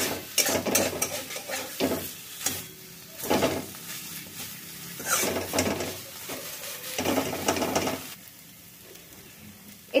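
A plastic spatula stirs and scrapes a thick paste of ground raw banana peel around a coated wok as it fries in oil, in repeated scraping strokes over a light sizzle. The stirring stops about two seconds before the end, leaving only a faint sizzle.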